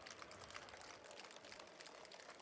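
Near silence: faint background noise with no distinct sound.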